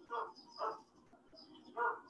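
Three short bird calls, faint: one just after the start, one about two-thirds of a second in, and one near the end.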